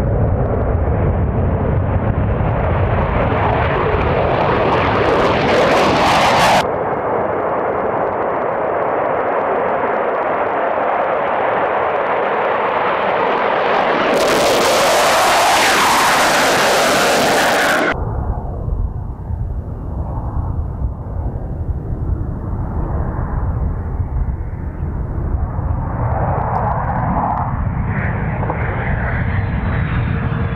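Jet engine noise from EA-18G Growlers, with their twin turbofans running at takeoff power, heard as a loud, continuous roar. It comes in several spliced clips that change abruptly about 6.5, 14 and 18 seconds in, and is quieter and rougher from about 18 seconds on.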